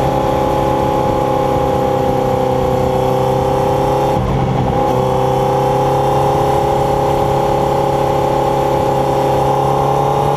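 Motorcycle engine running at cruising speed, with wind and road noise, heard from a camera mounted low on the bike. The note is steady, with a brief break about four seconds in, after which the pitch slowly rises.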